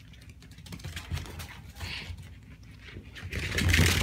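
Mini piglets scampering, their small hooves clicking and pattering on a hard wood floor, much louder in the last second as they run about.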